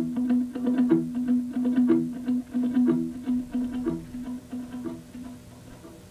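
Acoustic guitar picked in a slow repeating figure, with an accented note about once a second over a sustained low note. It fades gradually and ends about five and a half seconds in.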